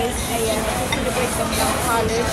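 Busy restaurant dining room ambience: a steady hiss of background noise with indistinct chatter from other diners.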